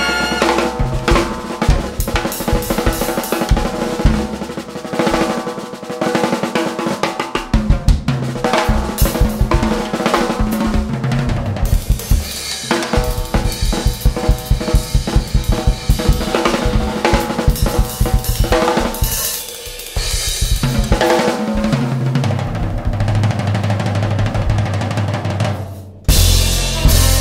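Jazz drum kit solo: snare, bass drum, toms and cymbals played in fast, dense rhythmic patterns with a brief drop in level about twenty seconds in.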